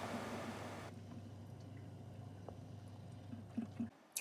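Faint, wet sounds of thick hollandaise sauce being poured from a carton, over a low steady hum, with a couple of soft knocks near the end.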